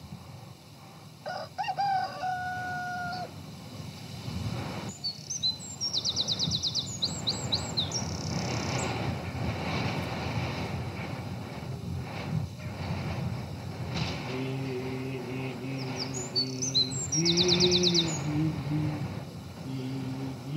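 A rooster crowing once, followed by songbirds chirping in quick high trills, over a steady hiss. From about two-thirds of the way in, a low drawn-out pitched sound rises in a step near the end while more bird trills come in over it.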